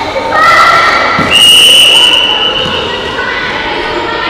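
Children's voices shouting in an echoing sports hall during a netball game, with one shrill high note held for about a second and a single thud just before it.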